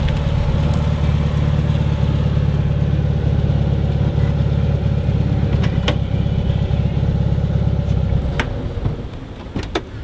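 Air-cooled flat-four engine of a Volkswagen Beetle idling steadily, then cutting off about eight seconds in. A few sharp clicks follow near the end, as the car doors are opened.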